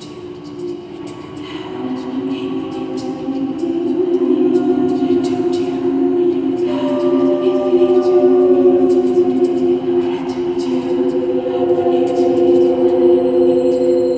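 Layered, choir-like held vocal tones: several sustained pitches stacked into a slow drone that thickens and grows louder over the first few seconds, then holds. Faint clicks run above it, and a thin high whine comes in near the end.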